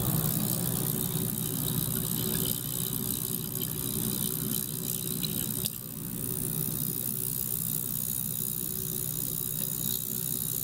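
Small ultrasonic cleaning bath running, a steady buzzing hum with a hiss from the water. About six seconds in there is a brief click and the level drops slightly.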